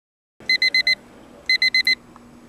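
Digital alarm clock beeping: two bursts of four quick high-pitched beeps, about a second apart.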